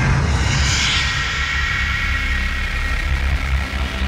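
Loud rumbling horror sound effect that comes in suddenly: a deep, steady rumble under a hiss that swells and then fades after about a second.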